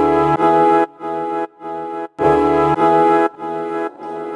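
Music: a brass ensemble's full held chords, cut off abruptly and restarted about twice a second, with louder and softer chords alternating.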